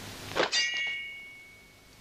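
Martial-arts film sound effect: a quick whoosh, then a metallic clang about half a second in. The clang rings on with a bright, fading tone for over a second.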